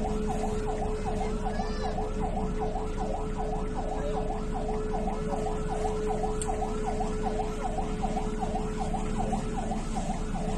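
Siren yelping: a fast, regular warble of about three sweeps a second that runs steadily over a constant hum.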